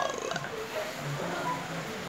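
A soft, low, closed-mouth hum from a man's voice, held steady for about a second in the second half.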